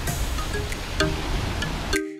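Steady outdoor noise of wind and sea, with soft background music and a few faint chime-like notes over it.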